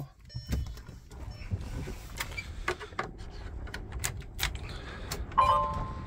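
Scattered clicks and knocks of handling. Then, about five and a half seconds in, a short steady electronic beep: the semi truck's key-on warning chime as the ignition is switched on and the dash warning lights come up.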